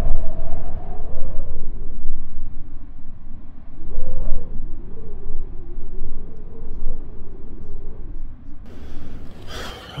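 Wind buffeting the microphone: a heavy, gusting low rumble that rises and falls.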